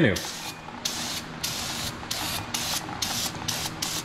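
Aerosol brake cleaner sprayed onto a truck's rear brake drum in a string of short hissing bursts, about three a second.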